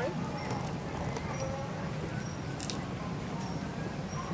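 Long-tailed macaques giving faint short calls over a steady low murmur, with a few soft clicks.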